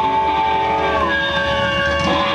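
Live rock band with amplified guitars and keyboard holding a loud, sustained chord of several steady droning tones, with a note sliding in pitch about halfway through.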